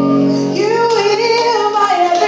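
Worship music: a woman's voice singing a gliding melody over steady, sustained chords.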